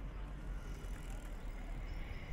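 Outdoor city ambience: a low steady rumble with a general background wash, and faint high-pitched tones coming in about halfway.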